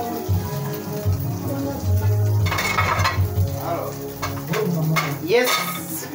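Food frying in a metal pot, sizzling, with a metal spoon stirring and clicking against the pot; the sizzle swells briefly about halfway through. Music plays underneath.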